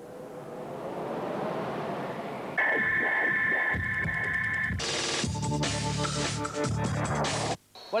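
Electronic music of a television advertising jingle: a swelling rush builds for about two and a half seconds, a steady high tone with a rhythmic pulse follows, then a louder full passage that cuts off sharply near the end.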